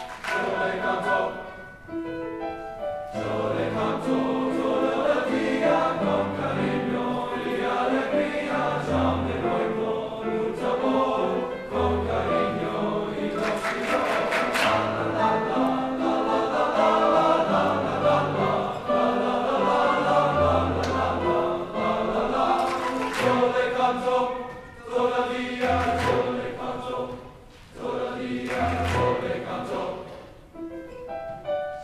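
Men's choir singing a strong, happy piece in Spanish in several parts, with piano accompaniment. A few sharp percussive hits cut through around the middle and again later on.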